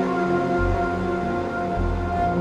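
Ambient synthesizer music: sustained tones held over several pitches, with a deep bass note coming in about half a second in and again near the end.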